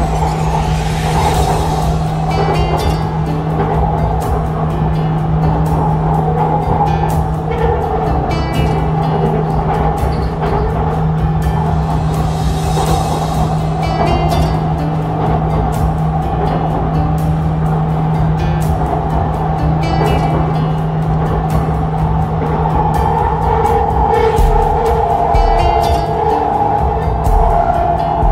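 Background music over the steady running hum of an electric metro train.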